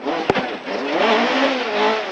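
Rally car's engine pulling hard under acceleration, its pitch rising and wavering, heard from inside the cabin over heavy road and tyre noise. There is a sharp knock just after it starts.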